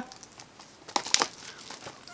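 Plastic Blu-ray cases and their wrapping crinkling and clicking in the hands as one case is set down and the next picked up, in a short cluster of crackles about a second in.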